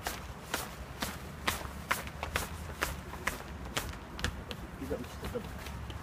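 Quick footsteps running up stone stairs, running shoes striking the steps in a steady rhythm of about two steps a second.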